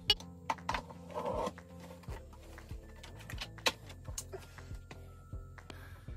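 Quiet background music, with scattered clicks and knocks and a brief scrape about a second in, from the plastic and metal parts of a gaming chair as the seat is fitted onto the gas-lift cylinder.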